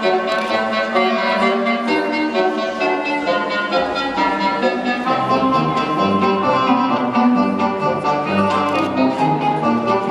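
Instrumental music with strings prominent, played as the accompaniment to a stage dance; lower notes grow stronger about halfway through.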